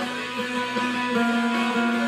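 Clean electric guitar played through a mild compressor: evenly picked notes over a steadily ringing note, the chord changing a little over a second in.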